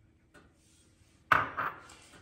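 Near silence, then a single sharp clatter of kitchenware about a second and a quarter in, ringing briefly as it fades: dishware or a utensil knocking against the pot or the counter.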